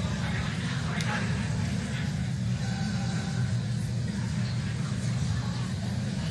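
A steady low rumble with no clear events, and faint voices in the background.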